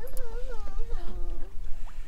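A soft, high, wavering vocal whine that rises and falls in pitch for about a second and a half, over a steady low rumble.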